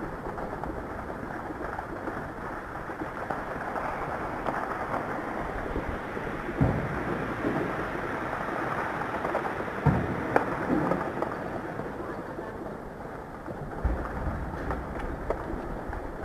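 A steady low rumble broken by a few dull thuds, about six and a half, ten and fourteen seconds in: distant gunfire and explosions from heavy fighting.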